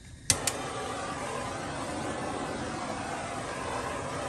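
Handheld gas torch being lit: a sharp igniter click about a third of a second in and a second click just after, then its flame hissing steadily.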